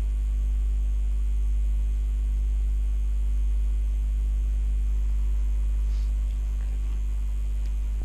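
Steady low electrical mains hum, with a couple of faint ticks near the end.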